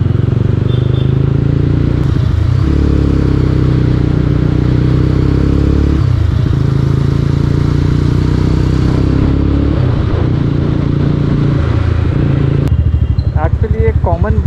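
Mahindra Mojo's 295 cc single-cylinder engine and exhaust running as the bike rides through traffic, its note shifting and dipping in pitch every few seconds as the throttle changes.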